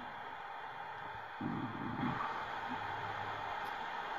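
Steady background hiss. About one and a half seconds in, a brief low murmur is heard, and a faint low hum follows it.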